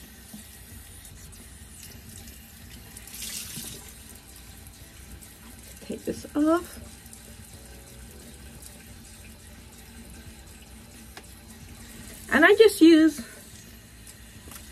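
Bathroom sink faucet left running, a steady rush of water into the basin that grows briefly louder about three seconds in.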